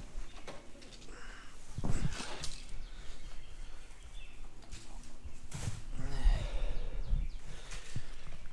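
Handling noise close to a body-worn camera: rustling and knocks of gear and clothing. There are louder thumps about two seconds in and again around six to seven seconds.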